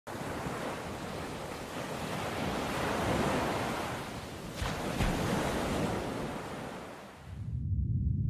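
Ocean surf washing in a steady rush that swells and ebbs, with two brief louder surges about halfway, then fades out near the end as a deep low bass comes in.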